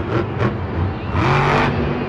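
Monster truck's supercharged V8 engine running hard as the truck lands a jump and drives off across the dirt, recorded from the stands, with a burst of stadium crowd cheering about a second in.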